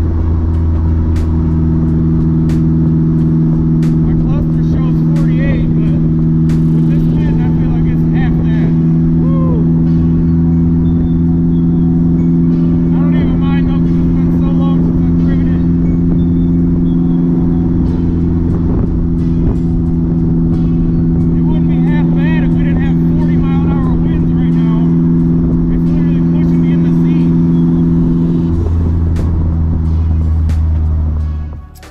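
Polaris Slingshot's engine running at a steady cruising speed, heard from the open cockpit. Its note holds steady and then changes shortly before the end.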